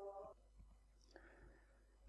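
A held electronic tone of several steady pitches cuts off sharply about a third of a second in, leaving near silence with one faint brief sound about a second in.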